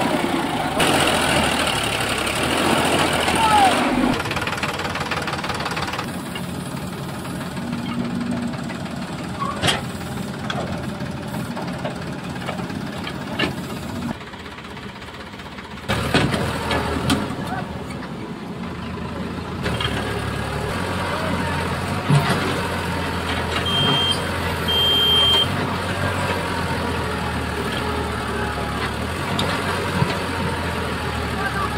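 Diesel engines of a Sonalika DI-740 tractor and a Case 770 backhoe loader running as the backhoe's bucket pushes the tractor's mud-stuck trailer, with voices of onlookers over the engine noise.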